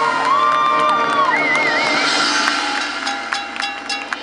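Marching band holding a sustained chord while the crowd cheers and whoops. Short mallet-percussion strikes come in during the last second or so.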